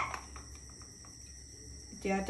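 Crickets chirping steadily and faintly in the background, with a single brief clink right at the start.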